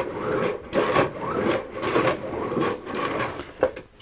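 Bissell Sturdy Sweep manual carpet sweeper pushed back and forth over carpet: its brush roll and gears whir and rattle. The sound swells and fades with each quick stroke. It is a bit noisy.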